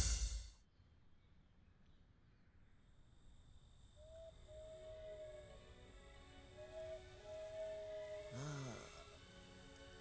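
Music cuts off in the first second. It gives way to a faint night ambience: a steady, evenly pulsing high chirp like crickets and soft held tones. About eight and a half seconds in comes a short low snore-like groan that rises and falls.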